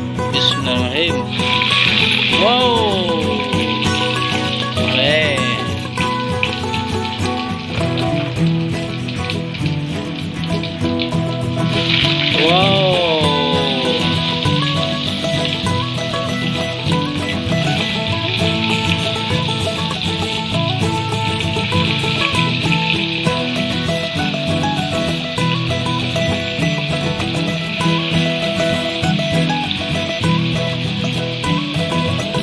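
Tempeh frying in hot oil in a wok: a steady sizzle that starts about a second in and grows louder about twelve seconds in as more pieces go into the oil. Background music plays throughout.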